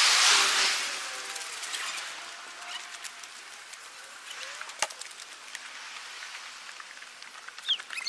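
Outdoor ambience: a hissing rush that fades away over the first two seconds, then a faint steady background with a few scattered clicks.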